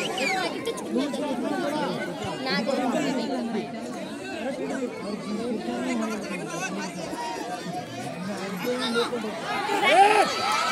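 Crowd of spectators chattering and calling out, many voices overlapping, growing louder near the end.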